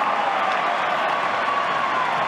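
Stadium crowd cheering and clapping steadily, the response to an Australian rules football goal just kicked.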